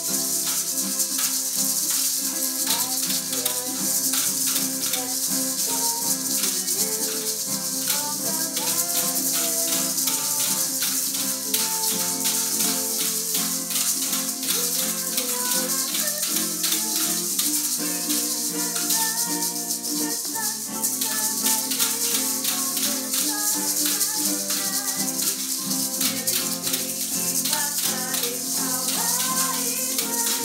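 A small live band of guitar-like plucked string instruments playing a lively tune, with a shaker keeping a quick, steady rhythm.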